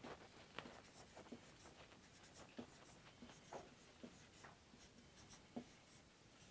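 Marker pen writing on a whiteboard: a string of faint, short strokes as a column of numbers is written down the board.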